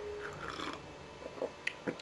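Spoon and ceramic mug being handled after stirring: faint, with a few small sharp clinks near the end.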